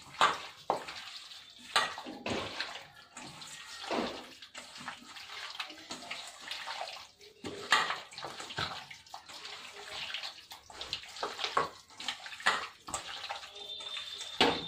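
A hand squishing chicken pieces through a wet spice marinade in a steel bowl: irregular wet squelching in short bursts.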